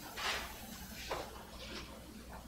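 A few soft rustling handling noises in a quiet room: one about a fifth of a second in, then smaller ones around a second in and near the end, over a low steady hum.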